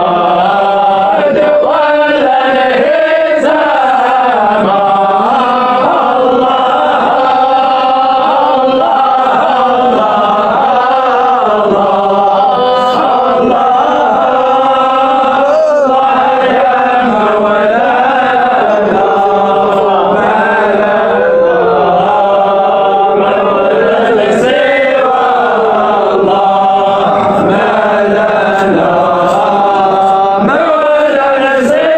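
Sufi sama' chanting: male voices singing a devotional hymn in long, slowly wavering melodic lines that run on without pause.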